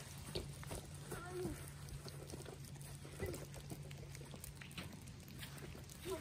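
Faint, distant voices calling out briefly about a second in and again after three seconds, over a low steady hum, with scattered light clicks and crunches.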